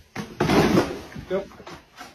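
Cardboard box rustling and knocking as a dog steps into it, in one loud burst about half a second in. A short bit of a person's voice follows.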